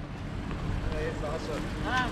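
Outdoor street ambience on a busy square: a steady low rumble with faint snatches of people's voices.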